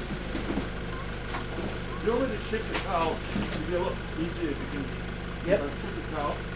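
People talking in short bursts of conversation, over a steady low hum.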